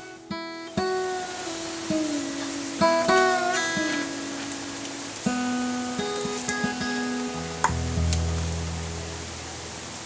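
Background music on acoustic guitar: single plucked notes ringing out one after another, with a deeper note held from about three quarters of the way in.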